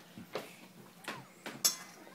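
A few light clicks and taps as an iPhone is handled and its screen tapped, the sharpest about one and a half seconds in.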